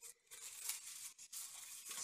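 Folded paper slips rustling and crinkling in irregular crackles as a hand picks through them in a small ceramic bowl and draws one out.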